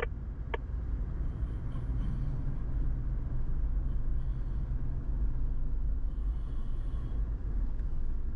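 Car engine and road rumble of a vehicle driving slowly down a street, with a single sharp click about half a second in.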